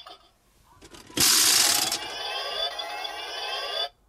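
Electronic sound effects from a Shinkenger Super Shinkenmaru toy's small speaker: a sudden loud noisy burst about a second in, then a sustained effect with rising sweeping tones that cuts off abruptly near the end.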